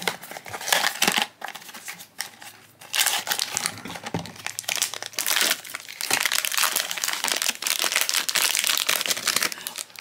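Small cardboard blind box being opened, then its foil figure bag torn open and crinkled by hand. Scattered crackles for the first few seconds, then dense, continuous crinkling from about three seconds in.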